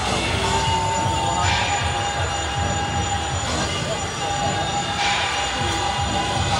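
Loud traditional temple procession music: drums and cymbals keep beating under long held high horn-like notes, which change pitch partway through, over a noisy crowd.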